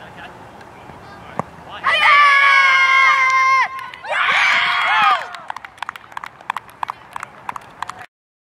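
A single sharp knock of cricket bat on ball about a second and a half in. It is followed by two loud, long shouted calls in high young girls' voices as the batters run between the wickets. A scatter of short sharp clicks, like claps, follows to the end.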